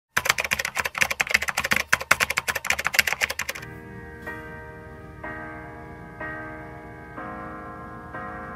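Rapid keyboard-typing clicks for about three and a half seconds. Then a piano backing track comes in, playing sustained chords about once a second.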